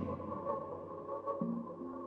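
Quiet generative electronic music from a BespokeSynth patch: a sparse ambient passage of long held synth notes without drums, with a lower note coming in a little past halfway.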